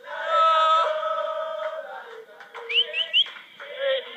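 A group of men chanting, holding one sung note for about a second and a half. Then come scattered voices and three quick rising whistles, one right after another.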